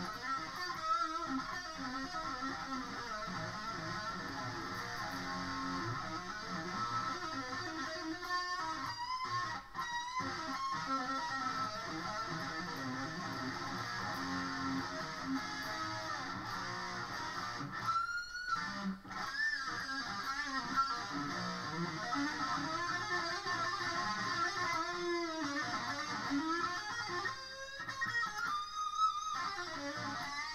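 Stratocaster-style electric guitar played solo, a run of lead lines with sustained notes, string bends and vibrato, pausing briefly twice.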